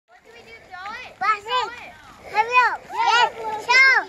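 A toddler's voice: a string of about five high-pitched, wordless calls and squeals, each rising and falling, the loudest near the end.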